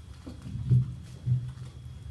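Two short, low, boomy sounds about half a second apart, picked up loud through a stage microphone, over a steady low room hum.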